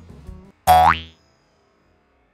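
A comic sound effect added in editing: a short, loud upward pitch sweep lasting about half a second, a little over half a second in.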